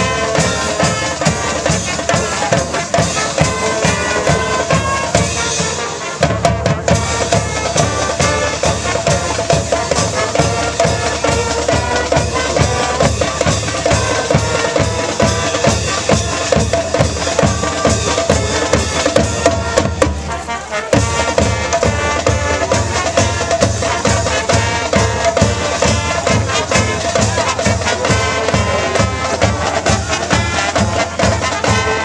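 High school marching band playing a fight song: brass melody over a drumline and bass drums keeping a steady march beat, with brief breaks in the low drums about six and twenty-one seconds in.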